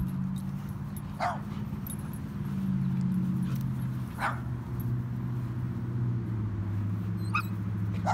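A dog giving short, hoarse yaps, three of them a few seconds apart, the cracked voice of a white fluffy dog that sounds broken. A steady low hum runs underneath.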